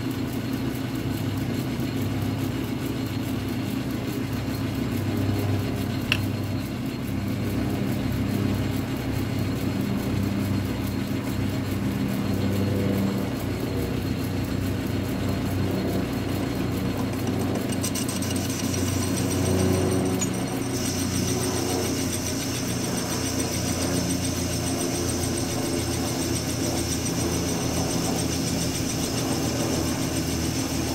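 A lathe built around 1929–1930, running steadily with a low hum while a tool takes a hand-fed facing cut across a steel workpiece, cleaning off the mill scale. A sharp click comes about six seconds in, and a faint high hiss joins about two-thirds of the way through.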